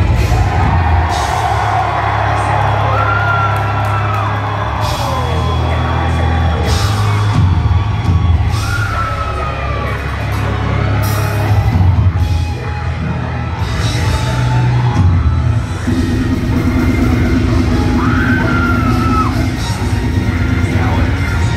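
Deathcore band playing live at full volume, recorded from within the crowd: dense drums and bass with distorted guitars, and a few short high gliding notes over the top.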